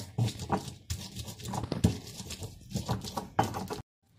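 Stone pestle pounding and grinding hydrated guajillo chiles in a volcanic-stone molcajete: irregular dull knocks of stone against stone through the wet chiles, roughly two a second. The sound cuts off abruptly just before the end.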